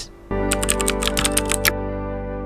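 Background music with steady, sustained guitar-like tones. Over its opening there is a quick run of about ten sharp, even clicks lasting just over a second.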